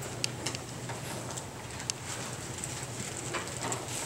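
Pages of a Bible being leafed through at a lectern: irregular sharp paper flicks and rustles over a low, steady hum.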